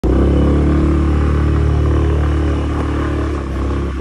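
KYMCO scooter engine running steadily while the scooter is ridden, a low, even drone that eases off slightly near the end.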